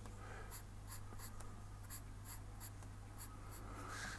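Black felt-tip marker drawing short strokes on paper, a faint, even run of scratches about three a second.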